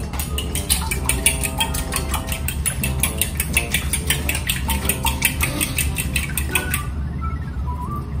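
Eggs being beaten in a glass bowl: a utensil clinks rapidly against the glass, about five strokes a second, and stops about seven seconds in.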